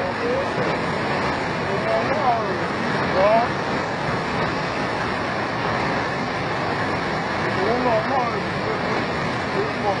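Steady rush of fast floodwater pouring over and under a railway track bed, with a few short voices calling out a couple of seconds in and again near the end.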